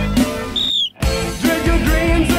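Progressive metal band music from a 1989 demo recording. About half a second in, a high falling tone sounds, then the music drops out for a moment before the full band comes back in.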